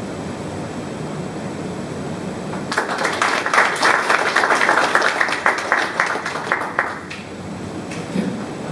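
Audience applauding, starting about three seconds in and stopping about four seconds later, with a steady low room noise before and after.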